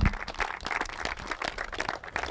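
An audience applauding, many hands clapping at once.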